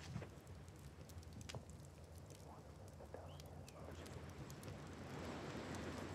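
Faint crackle of burning torch flames with scattered small ticks. Over the last couple of seconds a soft hiss of people whispering rises.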